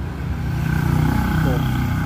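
Steady low hum of an engine running in the background, with a short spoken word near the end.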